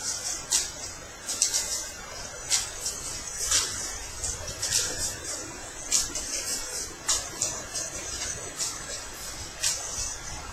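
Magic: The Gathering card decks being shuffled by hand: short, hissy swishes of cards sliding together, about once a second.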